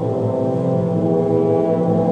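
Symphonic wind ensemble of woodwinds and brass playing long sustained chords, strongest in the low register, with the harmony shifting partway through.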